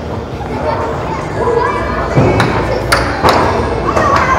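Puck and mallets knocking on a Dynamo air hockey table, three sharp clacks in the second half, over arcade noise and children's voices.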